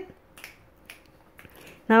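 A few sharp finger snaps, about half a second apart, from a man snapping his fingers as he starts to dance.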